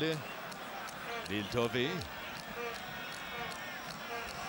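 A man's voice, the match commentator, speaks briefly about a second in, over a steady hum of stadium crowd noise.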